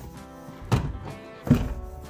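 Two dull thunks, under a second apart, as a semi-bucket seat is set down into a car's driver's-side floor, over steady background music.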